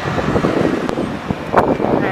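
Wind buffeting a handheld camera's microphone over outdoor street noise, with a couple of short knocks about a second in and near the end.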